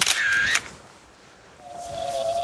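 A camera shutter firing once, a short burst lasting about half a second. About a second and a half in, a steady humming tone starts up: the kite and its line singing in a strong wind, the sound the kite flyer says he wants to hear.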